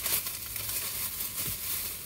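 Shopping bag rustling and crinkling irregularly as hands rummage through its contents.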